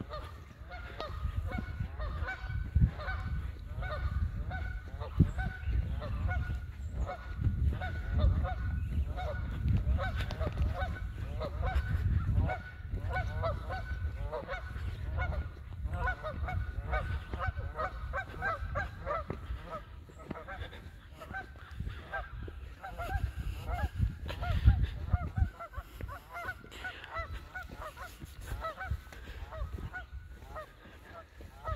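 Bird calls repeated rapidly and almost without a break, with low thumps and rumble from footsteps and handling close to the microphone.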